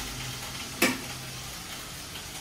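Food sizzling in hot oil in a frying pan while a spatula stirs it, with one sharp knock of the spatula against the pan about a second in.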